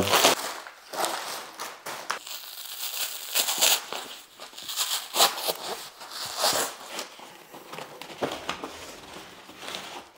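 Plastic wrapping crinkling and rustling as it is stripped off a roll of waterproof shower membrane, then the stiff membrane sheet rustling as it is unrolled, in a series of irregular crackly bursts.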